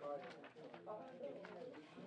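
Faint conversation of several people talking at once, with no other distinct sound.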